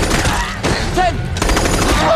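Gunfire in an action-film soundtrack: loud gunshots, three sharp cracks about half a second to a second apart. A man shouts a single word between the shots.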